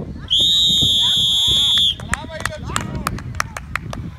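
A referee's whistle blown in one long, steady, shrill blast of about a second and a half, blowing the play dead after a tackle. Shouting voices and a run of sharp clicks follow.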